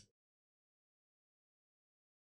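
Near silence: a very short sound right at the start, then nothing.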